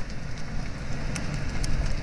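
A black SUV's engine running as it moves slowly past close by: a low hum under a steady hiss of noise.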